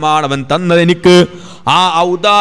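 A man's voice preaching into a microphone in a melodic, chant-like delivery, with long drawn-out syllables, and a short pause a little past halfway.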